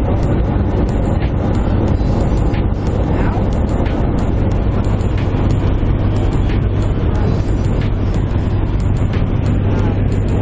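Jump plane's engine and propeller droning steadily inside the cabin, a loud, even hum during the climb to jump altitude.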